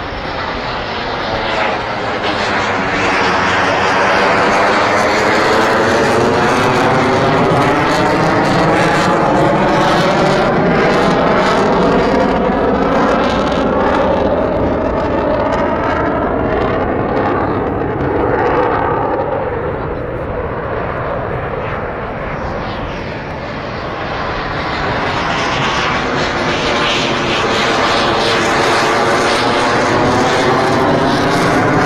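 F-18 fighter jet passing low overhead, its twin jet engines making a loud, sustained noise with a hollow, sweeping tone that dips and rises as it passes. It swells over the first few seconds, fades somewhat about two-thirds of the way through, then builds again near the end as the jet comes round.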